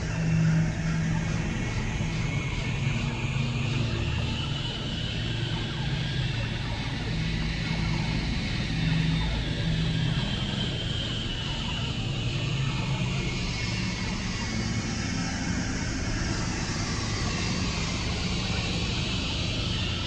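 Dense experimental noise-drone soundscape of several layered tracks: a continuous rumbling wash with low humming tones, and a hissing upper band that slowly rises and falls over about ten seconds.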